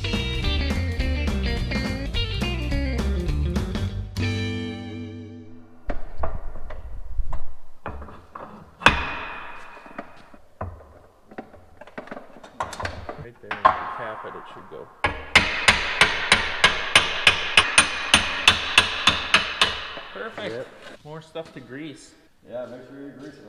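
Guitar music that ends about four seconds in, then hand-tool work on a corn planter's steel frame: scattered metallic knocks and clicks, some ringing, and later a run of about fifteen sharp, evenly spaced metallic taps, about three a second.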